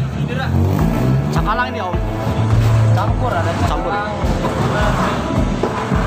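A vehicle engine running steadily under the overlapping chatter of several people.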